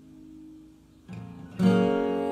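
A held chord of worship music fading out, then acoustic guitar strumming starts the next song about a second in and comes in at full level just before the end.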